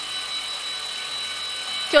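Electric stand mixer running with a steady whine, its whisk beating egg whites into meringue while sugar is added.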